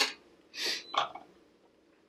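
A metal can of mackerel in brine being opened by hand: a few short metallic scraping noises in the first second.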